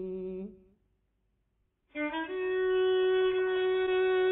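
A held sung note with vibrato ends about half a second in. After a short silence a solo violin enters in the Persian classical style in dastgah Chahargah, sliding briefly up into a long, steady held note.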